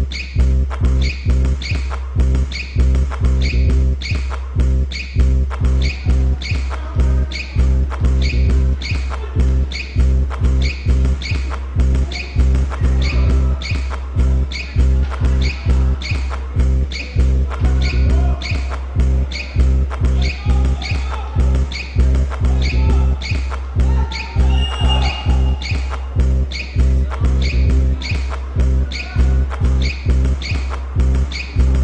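Instrumental background music with a steady beat and heavy bass.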